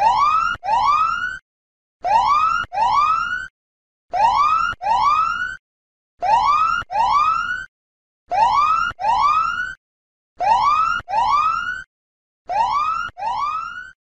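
Electronic whooping alarm sound effect: seven pairs of rising, siren-like whoops, one pair about every two seconds. It signals that the one-minute countdown timer has run out.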